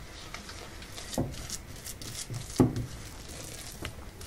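Silicone spatula stirring moist biscuit crumbs in a glass bowl: faint, soft scraping and squishing, with two slightly louder strokes about a second and two and a half seconds in.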